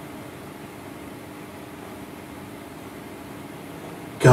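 Steady room tone: an even background hiss with a faint hum, without speech.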